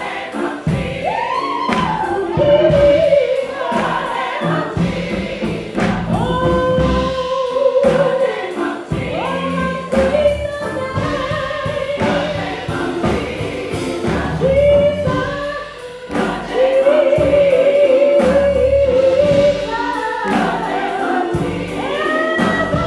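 Gospel choir singing, with a female lead singer on a handheld microphone holding long notes over the choir, with a steady beat behind.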